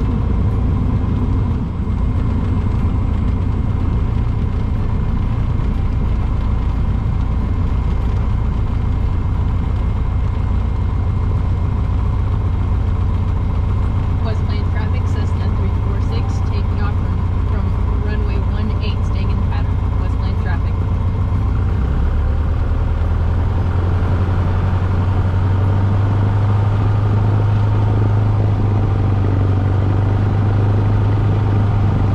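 Light aircraft's piston engine and propeller droning steadily, heard inside the cockpit; the drone grows louder and a little higher from about two-thirds of the way through as power comes up.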